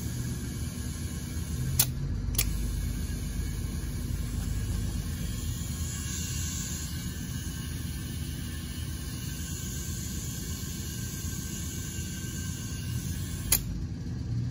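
Tire being inflated from an air compressor through a braided hose and inflator chuck on the valve stem: a steady low rumble with a faint hiss of air. Two sharp clicks come about two seconds in, and another near the end.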